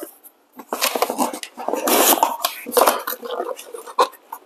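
Rummaging in a cardboard accessory box: irregular rustling and scattered metallic clinks as an espresso portafilter is dug out and lifted.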